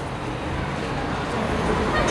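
Steady city street traffic noise, an even wash of sound with no distinct events.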